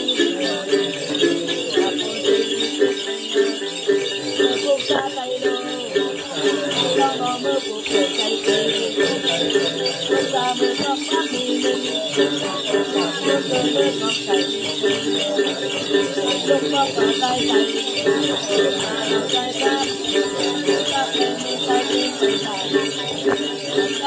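Then ritual music: a woman chanting in a wavering melody while plucking a đàn tính, the long-necked gourd lute, with small jingle bells shaken steadily to keep the beat.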